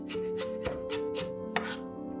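Chef's knife chopping diced onion against a wooden cutting board, quick even strokes about four a second.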